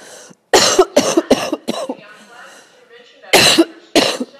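A woman coughing: a run of four quick coughs about half a second in, then another cough near the end.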